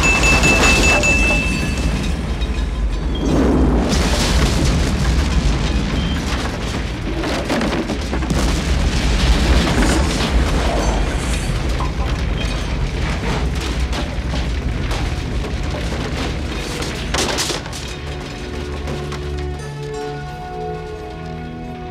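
Film soundtrack of a large explosion rumbling and roaring on after the blast, with a high steady ringing tone over it for the first two seconds. The roar swells and eases, mixed with music, and grows quieter near the end.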